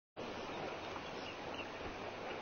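Faint, steady outdoor ambience: an even hiss with a couple of faint chirps a little over a second in.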